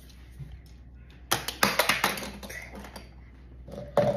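A quick cluster of light, sharp plastic clicks and taps lasting about a second, starting a little over a second in: the plastic shell of a car remote key fob being handled and pressed after it has been snapped shut.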